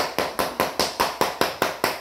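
A hammer tapping rapidly and lightly on the edge of a luxury vinyl plank, about five even taps a second, to close the plank's locking seam.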